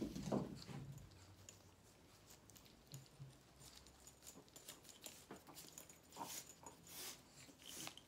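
Faint handling of a backpack purse's strap as it is adjusted: scattered light clicks and taps, more frequent in the last few seconds.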